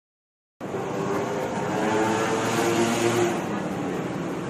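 Steady traffic and street noise of a roadside eatery, starting about half a second in, with a low hum that shifts in pitch partway through.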